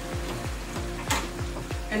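Chicken in a reduced, thickened sauce sizzling in a pan on the stove as the heat is turned off at the end of cooking, with a brief louder hiss about a second in. Background music with a steady beat plays underneath.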